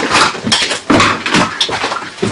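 Struggling human sounds: strained grunts and gasping, choking breaths in uneven bursts as a man is held by the neck.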